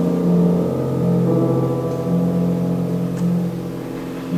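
Piano quintet of piano, two violins, viola and cello playing in concert: a slow passage of held low chords that swell and ebb about once a second.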